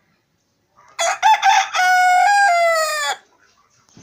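A rooster crowing once, starting about a second in: a few short opening notes, then a long held note that sags slightly in pitch before it stops.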